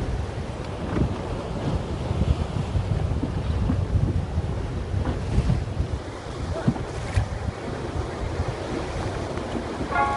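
Wind buffeting the microphone over the wash of choppy sea water, a rough steady rumble.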